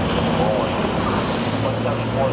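Steady expressway traffic noise with a constant low engine hum from nearby vehicles.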